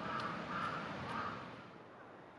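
A crow cawing in a quick run of about two caws a second, the last caw a little over a second in.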